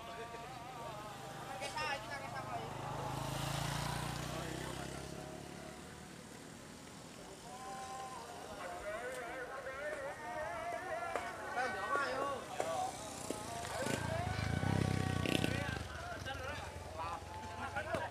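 Indistinct, unintelligible voices, some drawn out into long held notes, with a low rumble that swells and fades twice, around the fourth and the fifteenth second.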